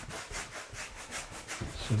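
Wide bristle brush scrubbing oil paint back and forth across a thin okoume plywood panel, in quick dry strokes about four a second.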